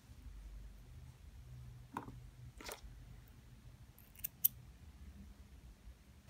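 Faint handling of cotton crochet thread, with two quick, sharp clicks close together about four seconds in.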